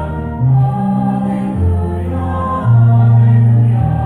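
High school concert choir singing sustained chords, the harmony changing about once a second.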